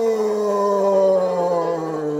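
A man roaring in imitation of a lion: one long, loud, held vocal roar sliding slowly down in pitch.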